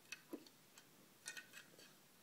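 Near silence broken by a few faint light clicks and taps of small plastic toy farm figures being handled and set down, with a quick cluster of clicks a little past the middle.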